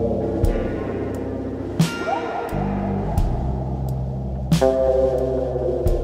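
Improvised instrumental jam by drums, electric guitar, synth and bass: held bass notes and sustained guitar and synth tones, with a rising glide just after two seconds. A few loud drum hits land about two seconds in, again past the four-second mark and near the end.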